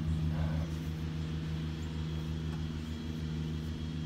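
Golf cart's engine running steadily, a low even hum with a regular pulse.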